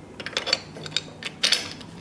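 A few short clicks and scrapes of spin-bike saddle hardware: the plastic locking knob and pin and the saddle slider being worked along the metal seat rail as the saddle is moved to its forward position.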